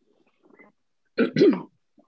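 A woman clearing her throat: two quick rasps about a second in, the second dropping in pitch.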